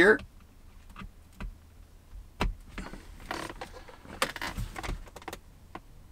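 Small clicks and rustling from hands handling a plastic clip-on mirror dash cam and its power cable, with one sharper click about two and a half seconds in.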